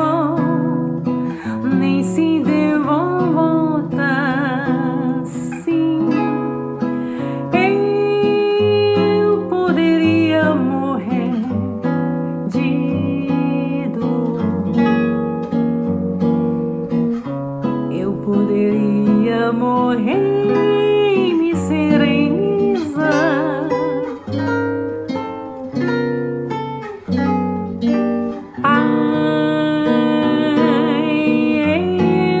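A woman singing, holding notes with vibrato, over plucked acoustic guitar accompaniment.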